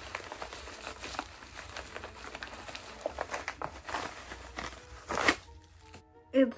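Yellow padded plastic mailer being opened by hand: crinkling and tearing of the wrapping with many small crackles, and one louder rustle near the end as a hardcover book is pulled out.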